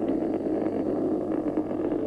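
Steady rumbling roar of the Titan II rocket climbing away, heard through an old TV broadcast recording with a constant low mains hum underneath.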